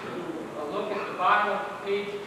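A man speaking, in phrases with short pauses; the words are not made out.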